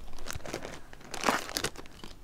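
Small clear zip-lock plastic bag crinkling as it is handled, an irregular run of crackles that is loudest a little past halfway.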